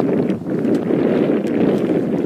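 Wind buffeting the microphone: a loud, gusting rumble that rises and falls in strength, with a few faint ticks above it.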